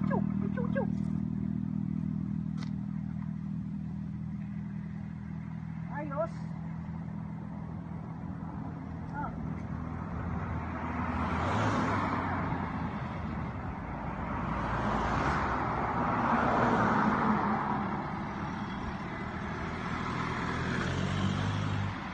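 Road vehicles driving past one after another, their engine and tyre noise swelling in waves through the second half, loudest about two-thirds of the way in.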